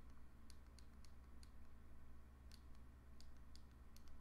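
Faint, irregular clicks of a Ledger Nano S hardware wallet's small push buttons being pressed to enter the PIN code, over a low steady hum.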